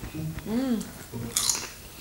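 A woman's short rising-and-falling "mm" hum through a closed mouth as she chews potato chips, then a brief crackle of chips about one and a half seconds in.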